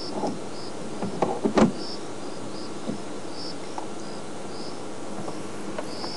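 Crickets chirping at night: short high chirps repeating about every half second over a steady background, with a few sharp clicks about a second and a half in.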